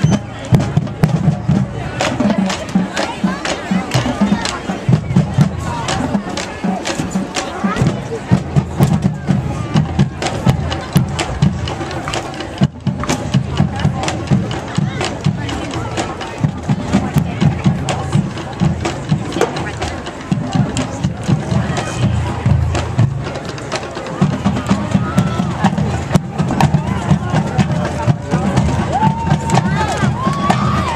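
Marching band percussion tapping out a steady beat while the band takes the field, over the chatter of a crowd.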